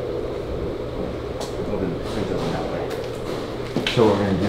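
Steady low hum of a running drum fan (air mover), with faint voices in the background.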